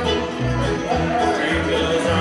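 Live bluegrass band playing an instrumental passage: banjo and fiddle over an upright bass sounding steady beats about two to three times a second.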